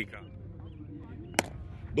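A single sharp crack of a cricket bat striking the ball, about one and a half seconds in, over faint outdoor background noise.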